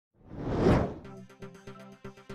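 A swelling whoosh sound effect that peaks just under a second in, followed by news-intro theme music with a quick, crisp beat over held tones.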